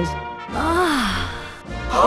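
A person's long, breathy sigh that falls in pitch, starting about half a second in, with music playing underneath.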